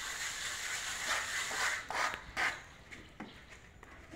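Steel trowels scraping wet cement render on a wall and board: several short, rough scrapes in the first half, after which it goes quieter.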